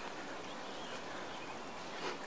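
Faint, steady outdoor background noise with no distinct events.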